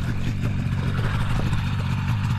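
Ultralight seaplane's engine and propeller running steadily just after start-up.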